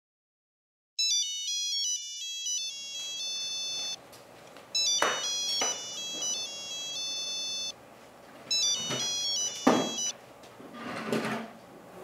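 A phone's electronic ringtone: a short high-pitched tune that starts about a second in and plays three times with short pauses between, stopping about ten seconds in. A few sharp knocks sound among the rings.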